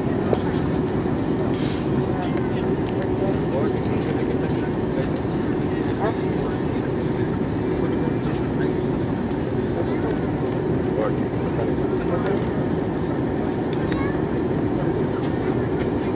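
Steady, loud cabin noise of a jet airliner in flight: engine and airflow roar with a constant low hum, heard from a window seat.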